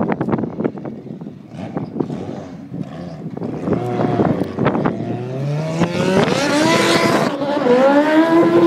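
A race-built Honda Civic's naturally aspirated 2.6-litre K24 stroker four-cylinder with individual throttle bodies, accelerating hard, its engine note rising in pitch and growing louder as the car approaches, with a brief drop and climb near the end. Before the engine comes in, wind buffets the microphone.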